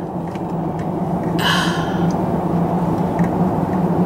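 Steady road and engine noise inside a moving car's cabin, with one short, sharp breath about a second and a half in.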